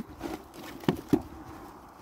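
Cucumbers being handled in a plastic bucket: faint shuffling with two short knocks close together about a second in.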